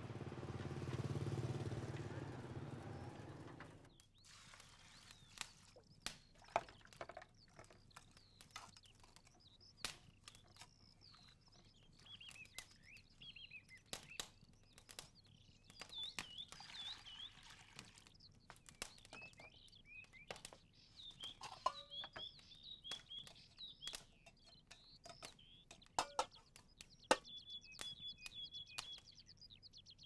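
For the first four seconds, the low rumble of a motor scooter's engine and street noise. Then small birds chirping over scattered clicks and knocks of a pot and bowls being handled while rice is washed.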